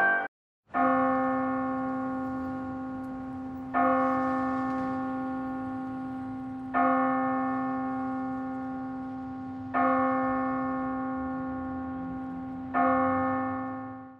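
A single church bell tolled five times at the same pitch, about every three seconds, each stroke ringing on and fading; the last one fades out quickly.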